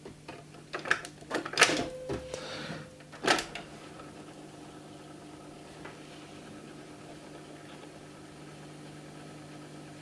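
Cassette loaded into the tape deck of a Silvia New Wave 7007 radio-cassette recorder: several plastic clicks and knocks in the first three seconds or so as the cassette door is shut and the deck's keys are worked, then a faint steady hum from the running deck.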